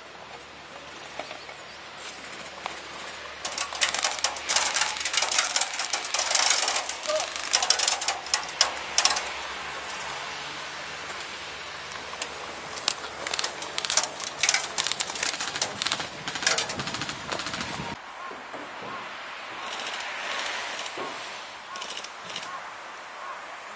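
Airsoft electric guns firing in rapid bursts, a busy exchange of sharp clicking volleys that starts about four seconds in and dies away near the end.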